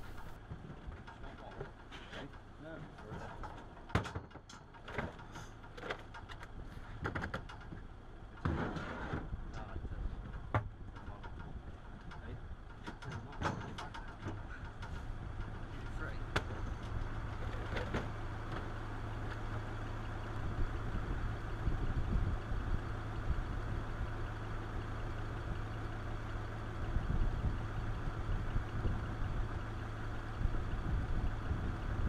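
A truck engine running steadily as the traffic management vehicle creeps along, its hum growing louder in the second half. Over it come scattered knocks and clatters of plastic traffic cones being lifted off the stack and set down.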